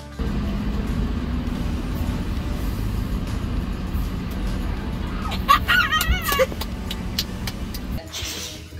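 Steady low rumble of an idling car heard from inside the cabin. About five and a half seconds in comes one short, high, warbling cry lasting about a second.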